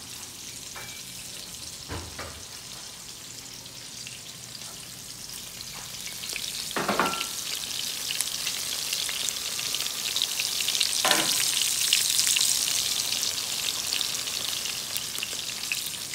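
Shrimp meatball patties shallow-frying in oil in a stainless steel skillet: a steady sizzle and crackle that grows louder about halfway through, with three light knocks along the way.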